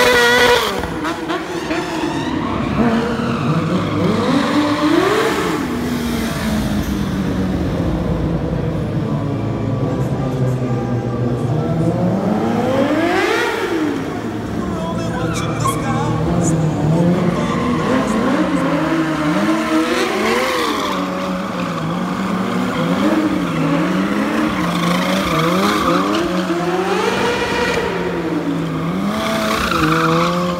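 Sport bike engine revved up and down over and over, its pitch climbing and dropping every second or two as the throttle is worked through stunt riding.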